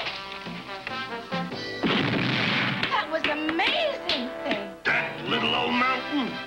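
Cartoon soundtrack music, broken about two seconds in by a loud rushing crash, with a sharp hit near the end.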